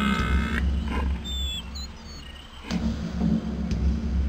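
Animated-logo sound effect: a deep rumble that swells, fades and swells again, with a pitched tone that cuts off about half a second in, a few high chirps and light clicks.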